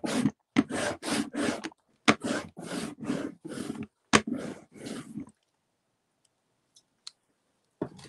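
Rubber roller rolling back and forth over block printing ink on an acrylic plate, thinning the ink to a thin, even layer. The strokes come about three a second in short runs and stop about five seconds in, followed by a couple of faint clicks.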